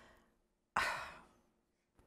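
A woman's audible breath, starting suddenly about three-quarters of a second in and fading away over about half a second.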